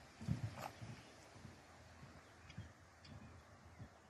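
Faint, irregular dull thuds of a horse's hooves as it canters and bucks on soft dirt.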